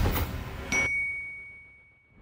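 Logo-sting sound effect: a rushing sweep dies away, then about three quarters of a second in a single bright chime is struck. It rings on as one clear tone and fades away to silence.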